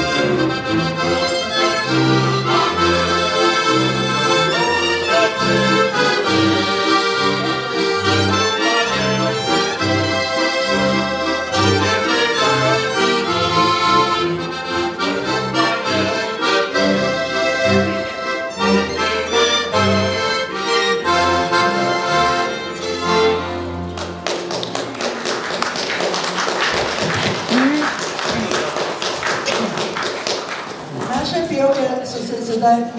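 A folk band of piano accordion, diatonic button accordion, violin and double bass plays a lively tune, with the bass marking the beat. The music stops about 24 seconds in, and clapping follows.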